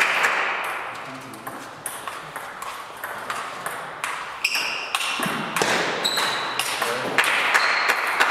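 Table tennis rally: the celluloid ball clicking off the bats and the table in a quick, irregular series of sharp pings, echoing in a large hall.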